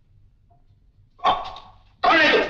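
A single loud bark about a second in, dying away within half a second.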